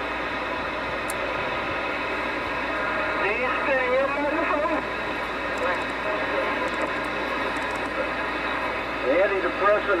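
Galaxy DX2547 AM/SSB CB base station receiving on AM: steady static through its speaker, with a warbling, garbled voice of distant radio traffic about three to five seconds in and again near the end. A few faint clicks come as the channel selector is turned.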